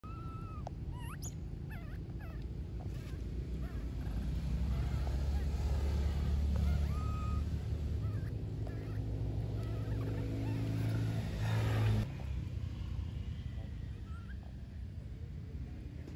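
Macaque coo calls: several short, high, whistle-like coos in the first two seconds and another about seven seconds in. Beneath them a low steady hum swells through the middle and cuts off suddenly about twelve seconds in.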